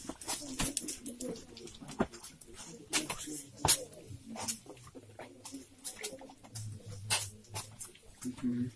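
Footsteps on a gritty stone floor: irregular sharp clicks and scuffs, about one or two a second, with faint voices in the background.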